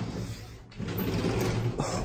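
Lever handle and latch of a hotel balcony door being worked, a mechanical creak with a click near the end.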